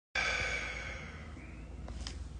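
A man's breathy exhale, like a sigh, loudest as it starts and fading away over about a second.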